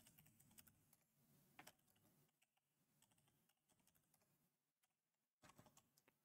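Near silence with very faint computer keyboard typing: scattered, irregular keystrokes.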